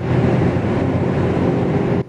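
Loud, steady driving noise from a vehicle moving at speed, road rumble with wind, cutting off suddenly at the end.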